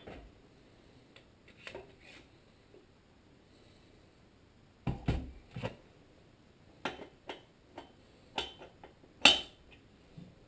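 Metal hand tools clinking and knocking at the flywheel nut of a small Tecumseh engine as a socket and wrench are fitted and handled. There are about a dozen separate sharp clicks and knocks, in small groups, and the loudest comes near the end.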